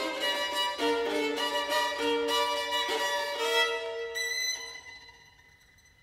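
Solo violin playing a line of held notes that change every half second to a second, then dying away over the last second and a half.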